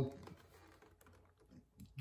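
Faint, scattered light clicks of plastic blister-pack packaging being picked up and handled.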